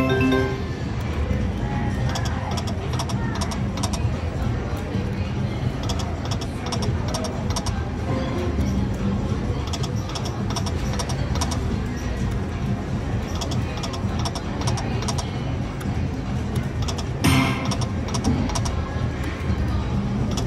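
Video slot machine game music and reel-spin sounds, with frequent light ticks as the reels run, over the steady din of a casino floor. A short chiming tone at the start marks a small win, and a louder sudden sound comes about 17 seconds in.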